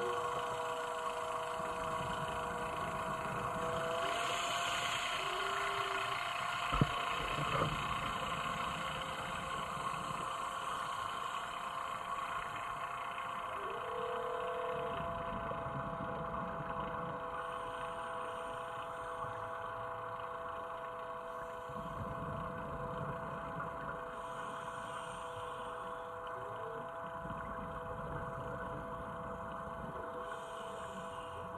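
Steady hum of a submersible's onboard machinery heard inside the cabin, holding several constant tones. Occasional short blips and two sharp clicks come about seven seconds in.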